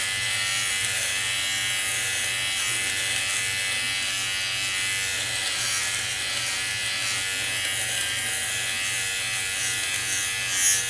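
Rechargeable electric lint remover (fabric shaver) buzzing steadily as it is run over a cotton pillowcase, its blades shaving off the pills of fuzz.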